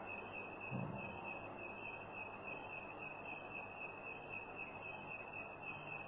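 Pause in a recorded talk: steady hiss from the recording, with a constant thin high whine running through it, and a brief faint low sound about a second in.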